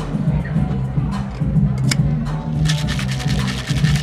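Background music with a steady bass line, a single sharp click a little under two seconds in, then, from about two-thirds of the way through, the fast rattle of ice being shaken in a metal cocktail shaker.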